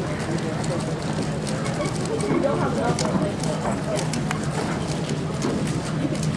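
Plastic 3x3 speedcube being turned by hand: quick, irregular clicks of its layers snapping round, over the steady murmur of a crowded hall.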